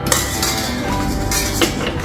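Metal clinks and taps as a stand mixer's attachment is pushed onto the drive shaft and twisted to lock, knocking against the stainless steel bowl, with sharper clicks near the start and about one and a half seconds in.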